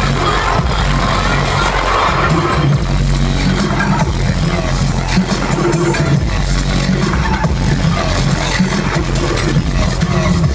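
Loud dubstep DJ set over a concert sound system, heard from the crowd, with heavy sustained bass under dense electronic sounds.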